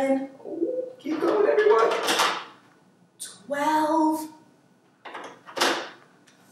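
A woman's voice in short spoken phrases with pauses between them.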